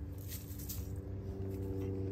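Granular fertilizer sprinkled by hand around the base of a rose bush, a faint patter and rustle of granules landing on wood chip mulch. A steady low hum runs underneath.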